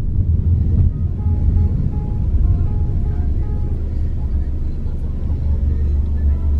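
Steady low rumble of a car driving, heard from inside the cabin. Faint music with short notes at changing pitches runs over it.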